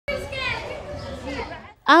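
Several children's voices overlapping, calling out and playing, over a low rumble of background noise. A single adult voice begins talking clearly at the very end.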